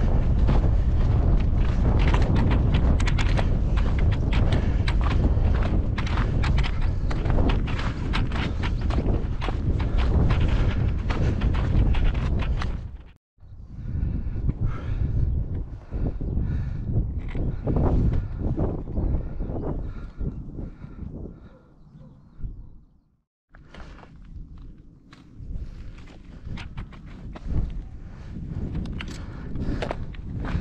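Wind buffeting the camera microphone, heaviest in the first half, with the hiker's footsteps on a stony moorland path. The sound drops out briefly twice, about 13 and 23 seconds in.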